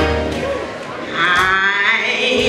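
Church organ chord held and fading, then about a second in a high, wavering voice with a strong vibrato rises over it.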